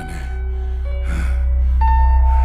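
Tense film score: a deep steady drone with held tones, a new higher tone entering near the end. Over it, a man's short breathy gasps, about twice.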